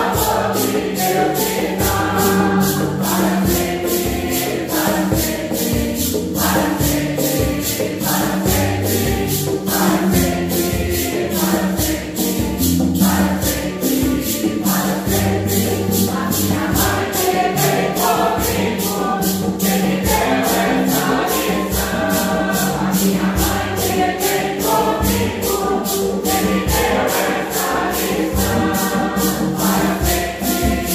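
Mixed choir of men and women singing a Santo Daime hymn in unison, accompanied by a mandolin and a guitar, with maracas shaken in a steady beat.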